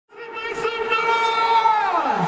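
Marching band brass section holding a loud chord that swells in at the start, then sliding down in pitch together in a fall-off near the end.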